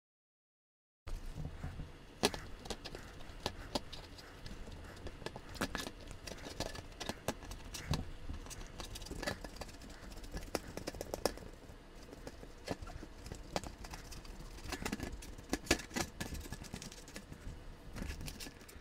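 A rubber-gloved hand rubbing and scraping a small metal model streetcar shell across a surface, working off old paint that the stripper has softened: irregular scrapes, clicks and wet rubbing, starting about a second in.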